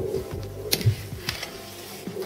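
Background music with soft sounds of a hand mixing and kneading dough in a bamboo bowl, and a couple of sharp clicks, the loudest under a second in.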